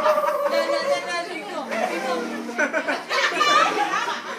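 Crowd of children and adults chattering, several voices overlapping.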